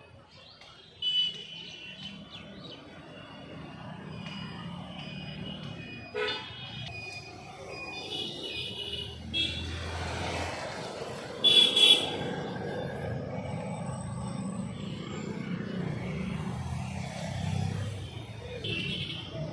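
Road traffic with a low rumble and vehicle horns sounding several times. The loudest horn blasts come about a second in and again around twelve seconds in.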